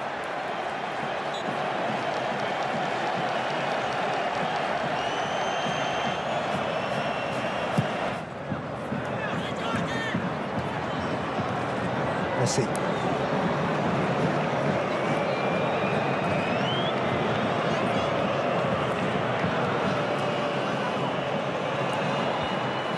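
Football stadium crowd: a steady din of many voices, with a few high whistles from the stands.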